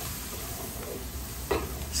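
Chopped trinity vegetables, pork and garlic sizzling in a light roux in a large aluminum pot, stirred with a wooden paddle. The vegetables are being sweated down. There is a brief louder scrape of the paddle about one and a half seconds in.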